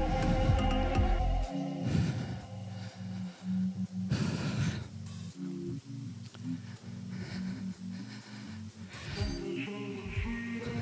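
Background workout music with a steady beat. About a second and a half in, the heavy bass drops out, leaving lighter repeating chords.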